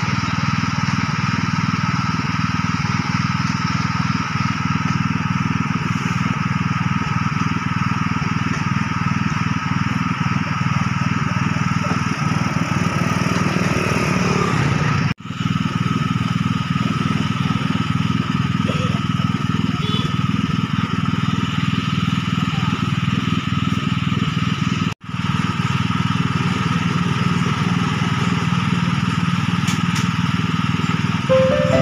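Steady mechanical drone of a small engine with a constant higher hum over it, unchanging throughout except for two brief dropouts about 15 and 25 seconds in.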